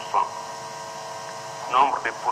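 Steady electrical hum made of several fixed tones, with a short snatch of a voice just after the start and speech starting again near the end.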